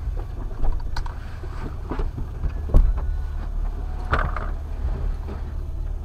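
A vehicle's engine idling, heard from inside the cabin as a steady low rumble. A few short knocks come over it, the loudest about three seconds in.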